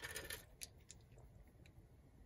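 Small plastic LEGO minifigure parts clattering briefly as a hand rummages through a loose pile, followed by a few faint separate clicks of pieces being moved and picked up.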